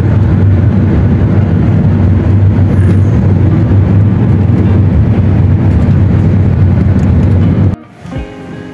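Loud, steady low rumble of road and engine noise from a car driving through a road tunnel, cutting off suddenly near the end.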